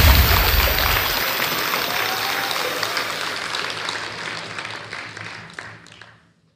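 Applause: many hands clapping, fading out steadily until it stops.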